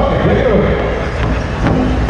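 Crowd chatter and a voice in a large arena, then the first strikes on a large powwow drum, beaten by several singers with drumsticks, starting about a second in.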